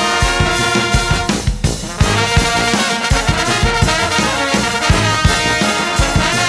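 A live brass band is playing a jazz tune, with trombones sounding lines over a drum kit's steady beat. The horns drop out briefly about a second and a half in, while the drums carry on.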